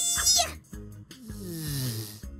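Cartoon sound effects over children's background music with a steady beat: a high vocal sound rises and holds briefly at the start, then a falling whistle-like glide with a hiss comes in the second half.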